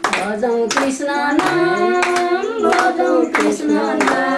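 A group of voices singing a devotional bhajan, with hand-clapping keeping an even beat of about one clap every two-thirds of a second.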